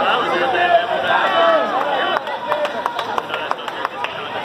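Background voices chattering in a crowded gym, followed from about halfway by a quick, irregular run of sharp clicks and taps.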